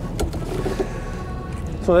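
Sailboat's inboard engine running with a steady low rumble, with a couple of sharp clicks near the start as the mooring line is worked around the pier bollard.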